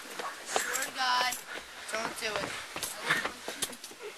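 Indistinct voices with short vocal sounds, mixed with a few clicks and knocks.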